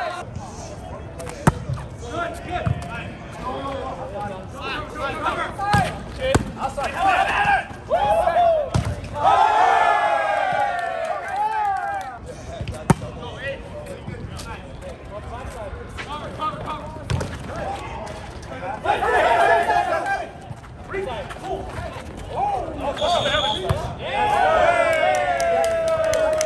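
Volleyball play: several sharp smacks of the ball being hit, spaced irregularly through the rallies, among players' shouted calls and cheers.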